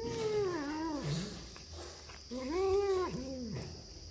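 A tabby kitten yowling twice while chewing a piece of food. The first drawn-out call falls in pitch; the second, about two seconds in, rises and then falls.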